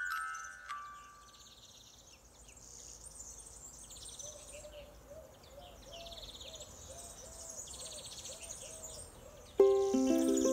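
Small songbirds singing outdoors, repeating short buzzy trills and high chirps. A glockenspiel-like chime dies away in the first second or so, and plucked ukulele music starts suddenly near the end.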